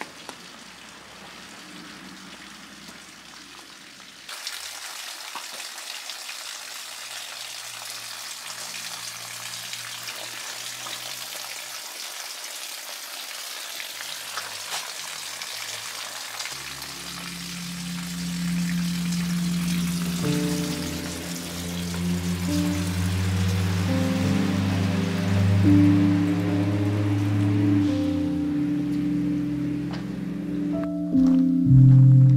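Water pouring from the rim spout of a stone temizuya basin and splashing onto the stones below, a steady hiss that gets louder about four seconds in. From about halfway, background music with long held low notes comes in over the water and grows louder.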